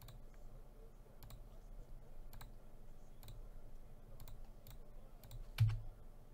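Scattered clicks from a computer keyboard and mouse, irregularly spaced, roughly one or two a second. A louder click with a low thud comes near the end.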